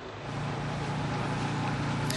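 Street noise with a vehicle engine running: a steady low hum under a wash of traffic hiss, growing slightly louder.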